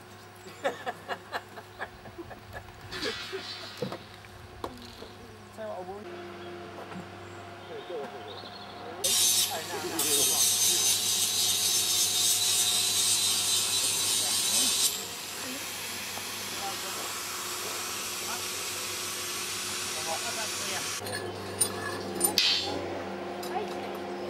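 Track-laying work on a miniature railway: scattered metal clicks and knocks, then a loud hiss about nine seconds in that lasts some six seconds and stops sharply, followed by a quieter hiss and more knocks near the end.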